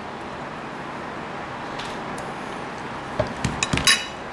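A metal spoon and a bowl set down on a ceramic plate and tabletop: a quick run of clinks and knocks near the end, over a steady room hiss.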